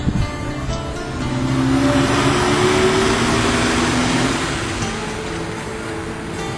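A motor vehicle goes past, its engine and tyre noise swelling up about a second and a half in and fading again after about four seconds, over music playing.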